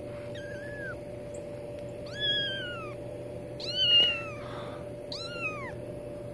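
Very young kittens meowing: four thin, high calls, each rising then falling in pitch, the first faint and the loudest about four seconds in.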